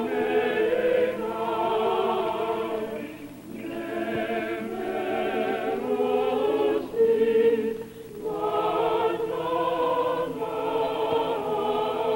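Church choir singing an Armenian liturgical hymn in long held phrases, with brief pauses about three and a half and eight seconds in.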